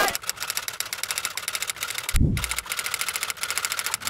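Typewriter key-clicking sound effect: rapid, even clicks, roughly ten a second, with one short deep boom about two seconds in.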